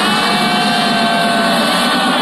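Loud live trance music from a festival sound system, heard from within the crowd: a sustained synth chord held through a breakdown, with no clear drum beat.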